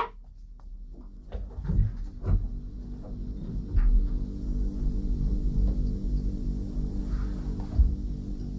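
Background music of low, sustained, droning tones that swells in about a second in and keeps going. A few soft thumps come through over it, around two and four seconds in and again near the end.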